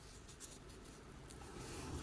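Faint rubbing and small ticks of a soft silicone mould being flexed and pressed by hand to pop out a glitter-resin piece.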